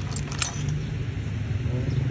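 A few short metallic clicks and a light rattle about half a second in, from the Stihl MS 381 chainsaw being handled, with a steady low hum underneath.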